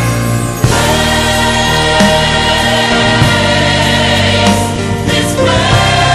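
Gospel music: a choir singing held chords over instrumental accompaniment.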